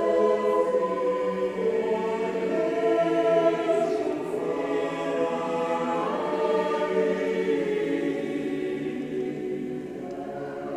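Large choir singing sustained chords, the sound gradually softening toward the end.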